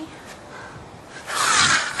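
A loud, breathy hiss for about half a second near the end, made by a person playing a monster, after faint background noise.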